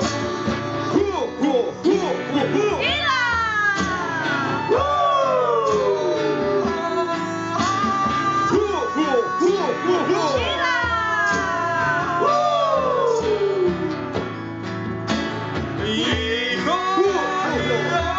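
Live band playing: acoustic and electric guitars, keyboard and hand percussion, with long sliding, falling notes laid over the music several times.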